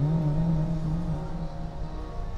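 The tail of a held, wavering note of sung Sikh kirtan, fading out about a second in and leaving a steady low rumble.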